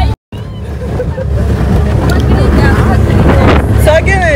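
Motorboat running at speed, with wind buffeting the microphone over a steady low rumble; the sound drops out for a moment just after the start.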